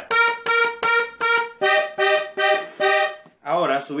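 Diatonic button accordion playing eight short, separate treble notes: one note repeated four times, then a two-button sixth repeated four times, in an even rhythm. The notes stop just over three seconds in.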